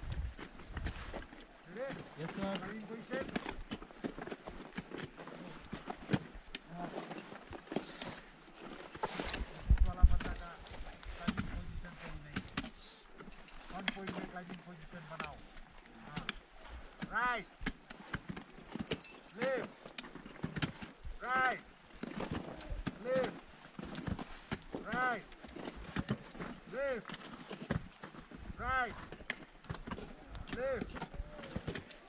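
Ice axes and crampon front points striking a glacier ice wall: irregular sharp knocks and scrapes, with one heavier thump about ten seconds in.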